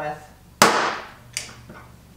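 Glue-pull dent repair tool pulling on a glue tab stuck to a car's fender: one sharp crack as the tab lets go, then a smaller click about three-quarters of a second later.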